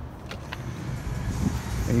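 A glass commercial door being opened and passed through: a few faint clicks from the handle and latch, over a low rumbling background of traffic and handling noise.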